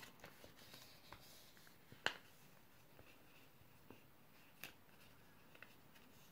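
Origami paper being folded and creased by hand: faint scattered crinkles and taps, with a sharp paper crackle about two seconds in and another near five seconds.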